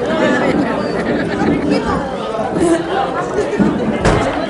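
Chatter of a seated audience: many people talking at once in a large hall.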